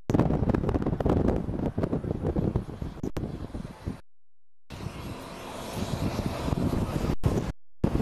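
Rumbling ride noise and wind noise of a moving vehicle on a camcorder microphone, strongest low down, with more hiss in the second half. The sound cuts out completely for about half a second around the middle and again briefly near the end.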